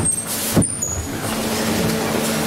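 Steady room noise with a low electrical hum, picked up through the table microphones, with two short knocks, one near the start and one about half a second in.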